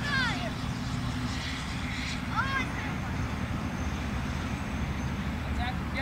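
Children's high-pitched shouts: one falling call at the very start and another about two seconds in, over a steady low rumble.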